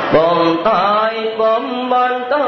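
A man chanting a Buddhist verse in long held notes, sliding from one pitch to the next between them.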